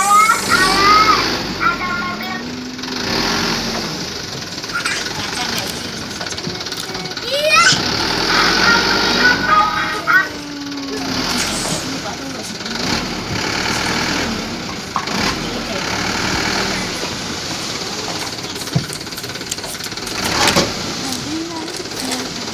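Plastic candy wrappers crinkling as wrapped gummy candies slide out of a tipped toy dump truck, against background voices.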